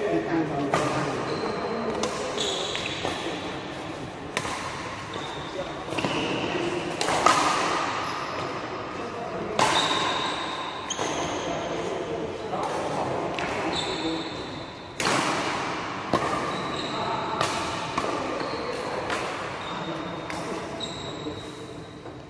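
Badminton rackets striking a shuttlecock in a fast rally: a long run of sharp, uneven cracks, roughly one a second or faster, the loudest about seven seconds in, each echoing through the hall. Short high squeaks of court shoes come between the hits.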